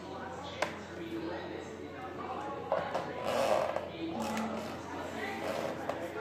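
Indistinct background voices, with a sharp click about half a second in.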